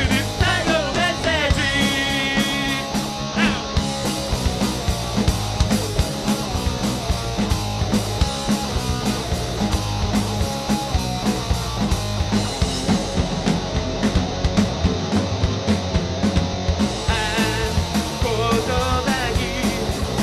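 Rock band playing live: electric guitars, bass and drums with regular drum hits, and a wavering lead melody line in the first few seconds and again near the end.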